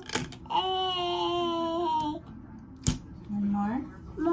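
A young child's voice holding one long, high-pitched wordless call, like a drawn-out 'whoa', followed a second later by a single sharp click and a short low vocal sound that rises at its end.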